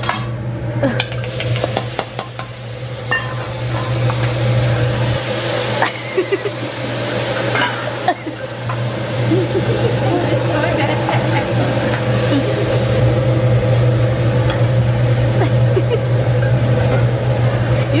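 Food sizzling on a hot cooking surface, with scattered sharp clicks of metal utensils, over a steady low hum.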